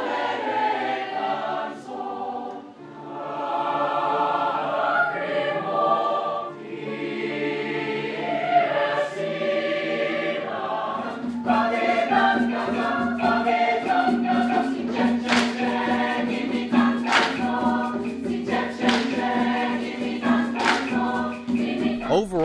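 A mixed high school choir of male and female voices singing. About halfway through it cuts to a different choral piece, with a steady low note held beneath the voices.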